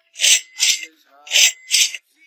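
A young woman breathing heavily in breathy, hissy puffs, two pairs of in-and-out breaths, like panting from exhaustion.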